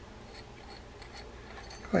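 Faint, scattered light clicks of small metal parts as the spool of a Daiwa 7850RL spinning reel is turned, aligned and seated on its shaft by hand.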